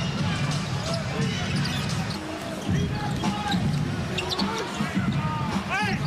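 Live basketball game sound in an arena: the ball dribbling on the hardwood court over steady crowd noise.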